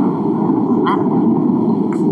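A steady, loud rumbling noise with no clear pitch, holding an even level throughout.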